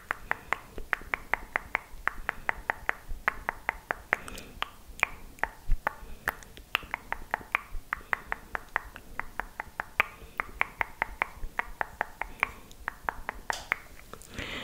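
Fast ASMR mouth sounds: sharp wet tongue and lip clicks right at the microphone, about six a second, in quick runs with short pauses between them.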